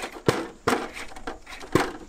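Axial 1/10-scale Chevy K10 RC crawler truck clunking down wooden deck steps: three sharp knocks as it drops from one step to the next, with a rubbing scrape of tyres on the wood between them.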